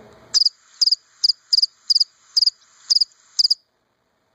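Cricket chirping: eight short, high, double-pulsed chirps at about two a second, loud and close, ending suddenly.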